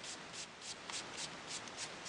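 Faint, quick back-and-forth rubbing on cardstock, about three or four strokes a second, as colour is rubbed and blended into a card.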